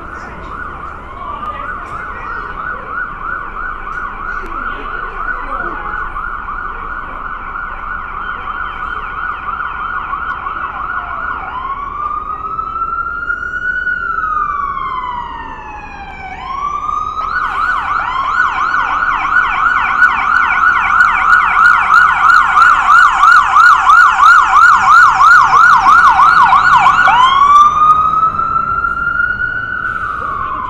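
Emergency vehicle's electronic siren alternating between a rapid warbling yelp and slow rising-and-falling wails. It grows louder from about halfway through and is loudest in the last third.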